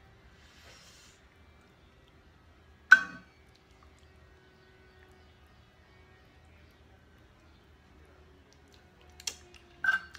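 A metal measuring cup clinks sharply once against a pan about three seconds in, a short ringing clink, while filling is scooped and spooned into a muffin tin. A smaller click follows near the end.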